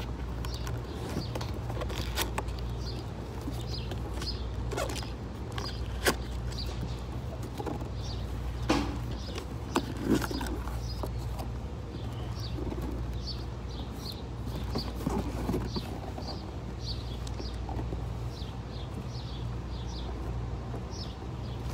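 A small bird chirping over and over in short high notes, over a steady low hum. A few sharp knocks and scrapes of a cardboard box being handled and opened break in, the loudest about six, nine and ten seconds in.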